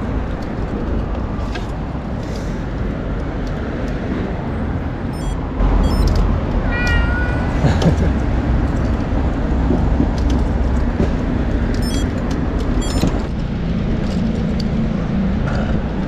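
A cat meowing once, about seven seconds in, over steady low street and wind rumble from the moving bicycle, with a few sharp clicks.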